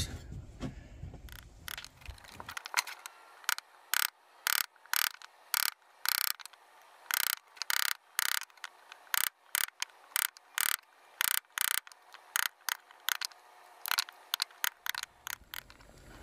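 Mallet striking a wood chisel, chopping slots in a plywood blank: a long run of short, sharp blows, about two or three a second, starting about two and a half seconds in.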